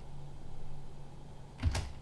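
Steady low hum with a single computer keyboard click near the end.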